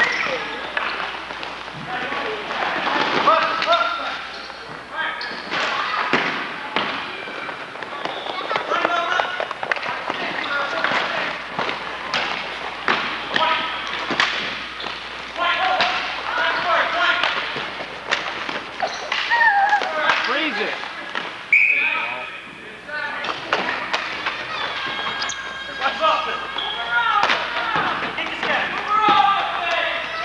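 Ball hockey play: indistinct voices and shouts of players, with repeated sharp knocks and thuds of sticks and ball striking the floor and boards throughout.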